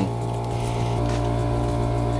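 Steady electric-motor hum, most likely the hydraulic press's pump running, a low drone holding the same pitch without change.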